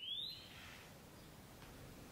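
A short rising whistle near the start, then faint steady background ambience with a few faint chirps.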